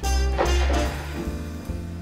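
Background music led by a plucked guitar, over a steady bass line.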